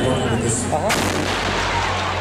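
Pipe bomb explosion: a single sudden loud blast about a second in, amid the shouting voices of a crowd.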